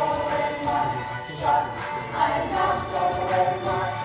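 A high-school chorus singing a show tune together, with a rhythmic musical accompaniment.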